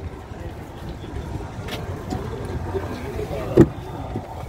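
A Honda City's driver door unlatching with a single sharp click about three and a half seconds in as it is pulled open, over low background chatter.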